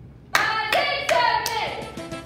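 Hand claps in a steady beat, four claps about 0.4 s apart starting about a third of a second in, with girls' voices chanting over them.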